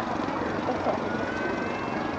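Steady city-street traffic noise, the low running of a bus and cars, with faint voices of people talking nearby.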